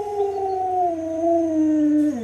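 An Alaskan Malamute howling: one long howl, slowly falling in pitch.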